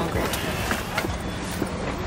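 Light knocks and rustling of things being handled at an open car hatch, a few separate clicks across the two seconds, over a steady low hum.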